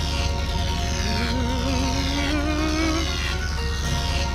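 Cartoon electric-machine sound effect as the lightning machine powers up: a steady low hum, repeated falling high-pitched zaps, and a wavering tone that rises slowly, over music.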